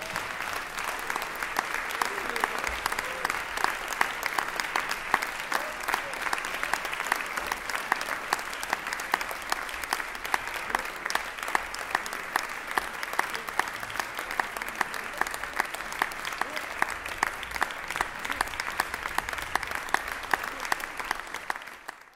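Audience applauding, a dense patter of many hands clapping, with a few sharper individual claps standing out; it fades out near the end.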